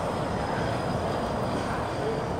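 Steady low rumbling background noise with no breaks, and a faint thin high whine above it.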